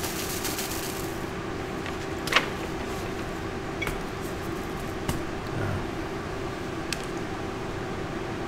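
Steady hum of a fan-type room machine, with a few light clicks as gloved hands handle a brittle hot-glue-and-glass snowflake on the table.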